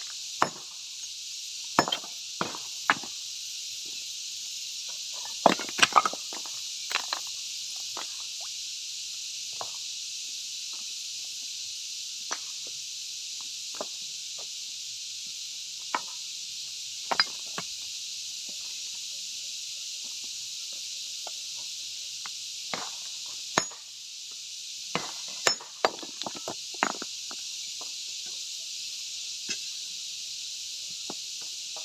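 Sharp clinks and knocks of hard stone: broken slabs and chips clinking against each other, under boots and against a hand tool, at irregular moments with a quick run of them about six seconds in and another near the end. A steady high hiss runs underneath.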